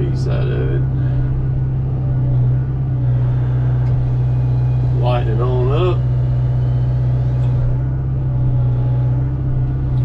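Excavator engine and hydraulics running steadily with a constant low hum, while the Rotobec Limb Reaper grapple saw's hydraulic chain saw, fitted with .404 semi-chisel chain, cuts through a log.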